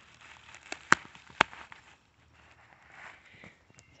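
Woven plastic landscape fabric and drip irrigation hose being handled: soft crinkly rustling with a few sharp clicks about a second in, two of them loud and about half a second apart.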